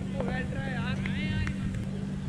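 Young cricketers' voices calling and shouting across the field, in short high-pitched calls, over a steady low hum.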